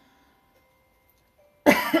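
Near silence, then about one and a half seconds in a short, loud, breathy laugh.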